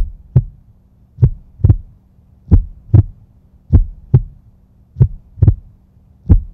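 Heartbeat sound effect: five double thumps, lub-dub, about one every 1.25 seconds, over a steady low hum.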